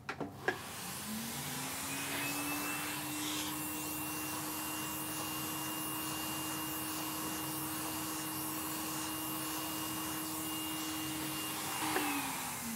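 Vacuum cleaner driving a thin hose with a small brush nozzle, used to brush-vacuum mould off a fragile paper document through a mesh screen. It switches on with a click or two, its motor whine rises to a steady pitch over a rushing air hiss, and it begins to wind down near the end.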